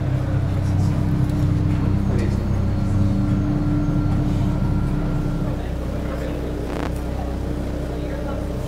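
A low, steady soundtrack drone with a held higher tone above it, dropping somewhat in level about five and a half seconds in.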